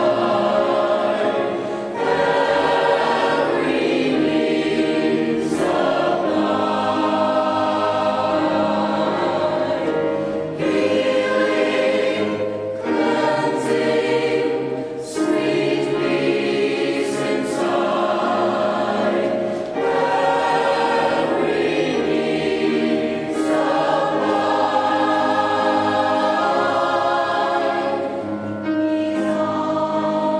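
A mixed choir of men's and women's voices singing together in long held phrases, with short breaks between phrases.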